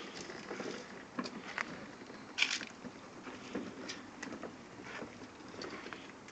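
Plastic ride-on toy push car rolling over asphalt, its plastic wheels and body giving a low rolling noise with scattered small clicks and knocks, a sharper one about two and a half seconds in.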